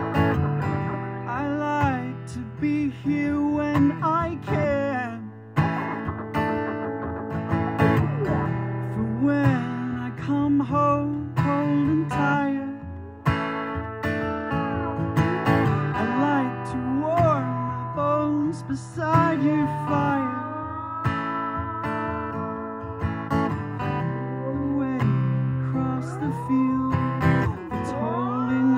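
Live instrumental passage: an acoustic guitar strummed under a lap steel guitar playing sliding, gliding notes with a bar. Near the end the steel slides up into long held notes.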